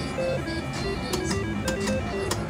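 Three-reel slot machine playing its electronic reel-spin tune, a run of short stepped beeping notes, with a few sharp clicks as the reels spin and begin to stop.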